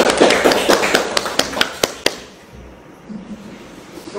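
A small audience clapping, thinning out to a few last separate claps and stopping about two seconds in.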